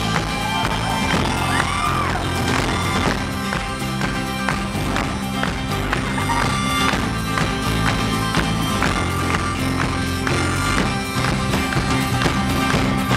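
Rock band playing live: a mandolin strummed in a steady rhythm over guitar, bass and drums, heard from the audience in a reverberant hall.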